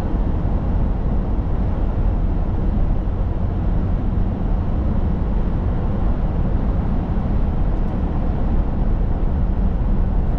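Steady road noise inside a car's cabin at highway speed: an even rumble of tyres and wind, heaviest in the low end, with no changes.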